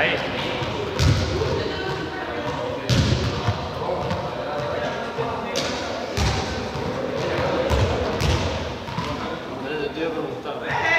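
Balls thumping on a sports-hall floor, about six knocks spread unevenly, over background chatter.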